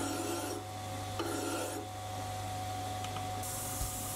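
A hand file scraping against a metal tool holder's taper as it spins in a Sieg C3 mini lathe, with strokes about a second apart over the steady hum of the lathe. Near the end the filing gives way to a steady hiss of 320-grit abrasive paper on the turning work.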